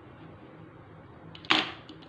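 A single sharp clack with a brief scrape about one and a half seconds in, as a transparent plastic set square is shifted on the drawing sheet, over a faint steady low hum.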